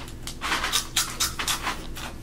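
Close-miked crunching and chewing of caramel rice crisps: a quick run of crisp crunches, about five a second.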